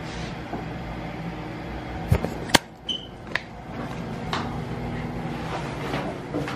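Handling noise from a jostled handheld camera, with a few short knocks and clicks. The sharpest click comes about two and a half seconds in.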